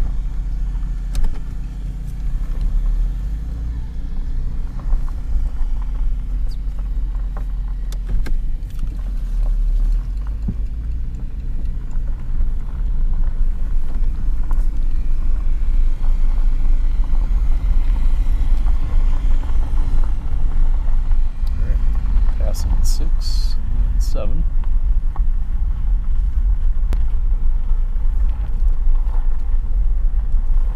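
A vehicle driving slowly on a gravel road: a steady low rumble of engine and tyres that grows louder about halfway through, with a few short clicks and squeaks near the end.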